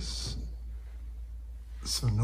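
Quiet room hum with a short breathy hiss at the start and a breath drawn near the end, just before speech.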